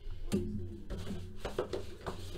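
Hands handling a sealed cardboard trading-card box, a few irregular knocks and taps on the box, over music playing in the background.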